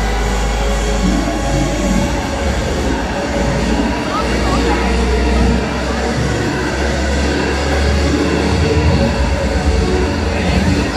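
Busy city pedestrian-street ambience: a steady low rumble with crowd voices and music mixed in.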